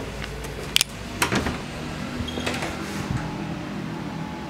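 Indoor room tone: a low steady hum with a couple of short sharp clicks about a second in.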